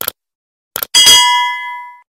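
A few short clicks, then a bright metallic ding about a second in that rings on and fades for nearly a second before cutting off suddenly.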